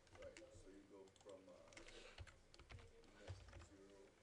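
Faint clicking of a computer keyboard and mouse, a scattered run of light keystrokes and clicks, under faint murmured voices.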